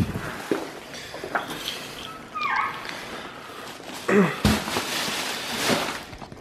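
Plastic carrier bags rustling as they are carried and set down on a counter, with scattered knocks, a short falling squeak about halfway, and a single thump a little after four seconds in.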